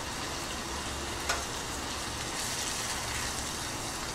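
Ginger, garlic and onion paste with pandan leaves sizzling steadily in margarine and oil in a clay pot over a gas flame as it is stirred with a spatula, with one light click a little over a second in.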